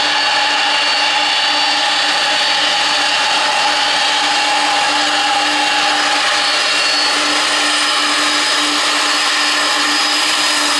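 The three turbofan engines of a McDonnell Douglas MD-11 running at taxi power: a steady whine with several held tones over a rushing hiss.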